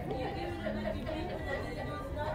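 Indistinct chatter of several people's voices in a department store, over a low steady hum.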